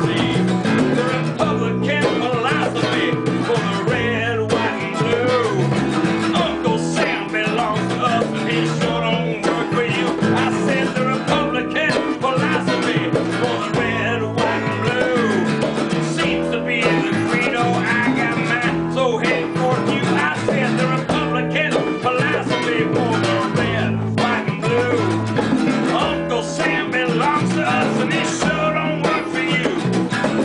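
An acoustic guitar and a solid-body electric playing a bluesy rock song together, with steady strumming and picked lines.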